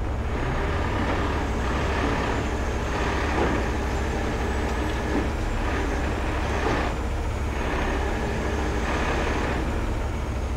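Heavy rotator tow truck's diesel engine running steadily under hydraulic load while its boom lifts a telehandler upright on cables.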